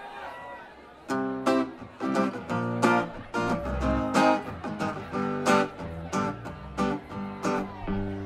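A guitar strumming chords in a steady rhythm, starting about a second in: the instrumental intro of a live rock song, before the vocals come in.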